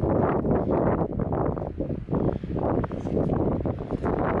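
Wind buffeting the camera microphone in uneven gusts, with some rustling.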